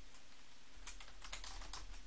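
Typing on a computer keyboard: a handful of faint, scattered keystrokes, most of them in the second half.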